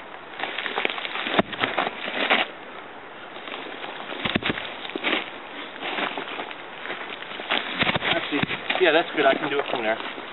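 Dry leaves and forest-floor debris rustling and crackling in scattered bursts as someone bends and handles stones and ground litter. Brief voices come in near the end.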